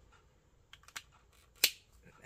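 A plastic alcohol marker and its cap being handled: a few light plastic clicks, then one sharp click near the end.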